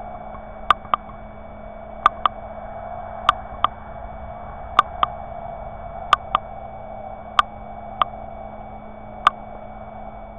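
Night-time outdoor recording from a small night-vision camera's own microphone: a steady hum with faint steady whining tones above it, broken by sharp ticks. The ticks often come in close pairs, about every second and a bit.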